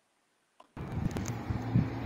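Silence, then about three-quarters of a second in, the sound track of an outdoor phone video cuts in: a steady low hum and rumble with a few short knocks.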